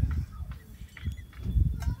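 A low rumble on the microphone, with a couple of faint, short vocal sounds from a baby, about a second in and again just before the end.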